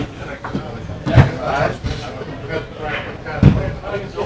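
Indistinct talk in a pool room, broken by two heavy thumps, one about a second in and one near the end.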